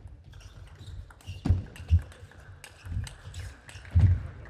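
A fast table tennis rally: the celluloid-type plastic ball clicking off the rackets and the table, with heavy thuds of the players' feet on the court floor as they move.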